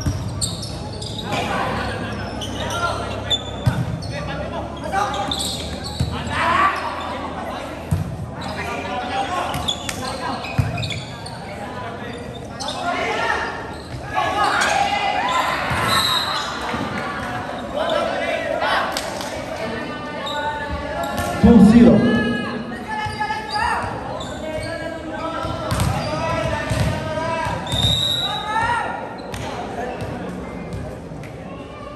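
Indoor volleyball play in a large, echoing gym: a volleyball being struck and hitting the floor several times, under continual shouting from players and spectators. The loudest moment is a strong shout about two-thirds of the way through.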